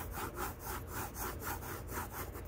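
Graphite pencil shading on paper: quick back-and-forth scratchy strokes, about four a second, laying in fur lines.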